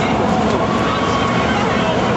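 Large crowd making a steady, loud din of many voices at once.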